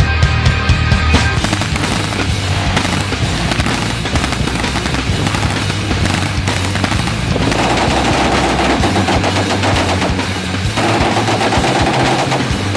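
Machine-gun fire in long rapid bursts, starting about a second in, mixed with loud music.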